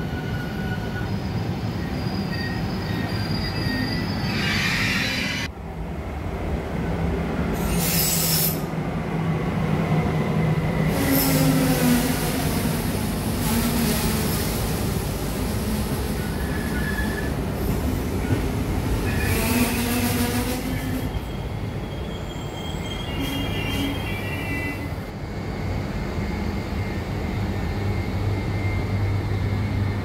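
Trenord double-deck electric commuter train pulling into a station and rolling slowly past the platform. Its wheels squeal in high tones that come and go several times over a steady low rumble and hum.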